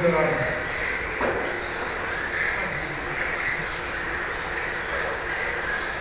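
Several electric RC GT cars with 17.5-turn brushless motors racing: overlapping high-pitched whines that rise and fall as the cars accelerate and brake through the corners.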